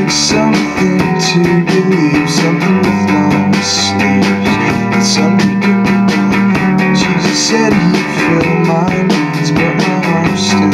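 A live rock band playing: an electric guitar strumming chords over a drum kit. A bright cymbal hit lands roughly every second over steady drumming.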